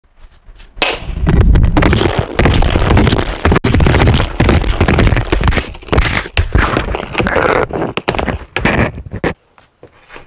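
Street hockey stick and puck on concrete: a rapid, loud clatter of sharp knocks and cracks, breaking off near the end.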